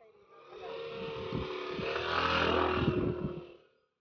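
A motor vehicle passing close by: its engine and road noise swell, are loudest in the middle, and fade away shortly before the end.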